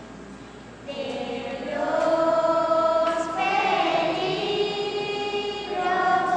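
Children's choir singing in sustained, held notes. The singing is quiet for a moment at the start and comes back in fully about a second in.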